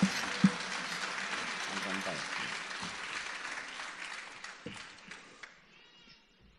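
Audience applauding at the end of a song, the clapping dying away over about five seconds, with a sharp thump about half a second in.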